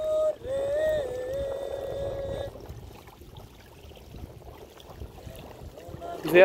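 A person's voice holding one long, slightly wavering note for about two and a half seconds, then quieter water sloshing around a man wading as he gathers a cast net.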